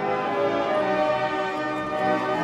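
Military band playing a national anthem in sustained brass chords.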